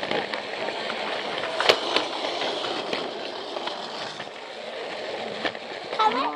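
Battery-powered Plarail toy train running along blue plastic track, heard from a camera riding on it: a steady rolling rattle of its small motor and wheels, with a few sharp clicks about two seconds in.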